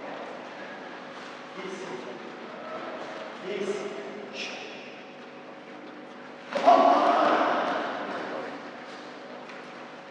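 Faint voices, then a sudden loud shout about two-thirds of the way in as two karateka clash in a sparring exchange. It rings on in a large hall and fades over a couple of seconds.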